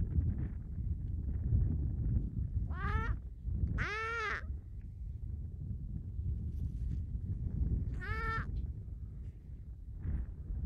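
Harp seal pup calling three times, short high cries that rise and fall in pitch, the second one the longest, over steady low wind noise on the microphone.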